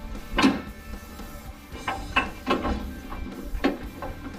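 Bonnet of a 1969 Holden HT Monaro being unlatched and raised: a sharp metal clunk about half a second in, then a run of lighter clicks and knocks from the catch and hinges. Background music plays underneath.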